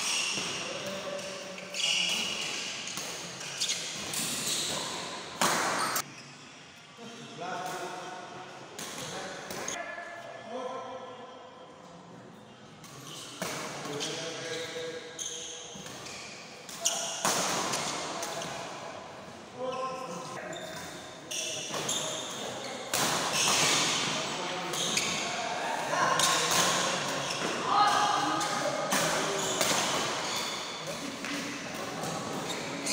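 Badminton doubles play: sharp racket hits on the shuttlecock at irregular intervals and players' footsteps on the court, echoing in a large hall, over steady chatter and calls from spectators.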